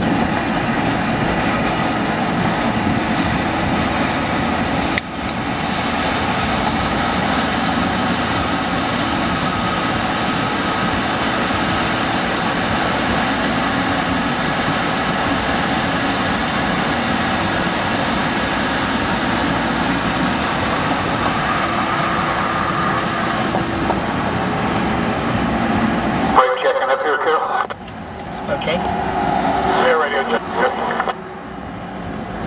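Steady road and engine noise heard inside a moving vehicle's cabin at highway speed, with a single sharp click about five seconds in. The low rumble cuts out abruptly near the end.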